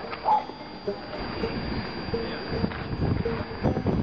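Wind rumbling on the microphone, mixed with camera-handling noise, under faint background music.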